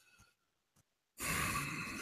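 Silence, then a bit over a second in, a person's audible breath, heard as a sigh, lasting under a second.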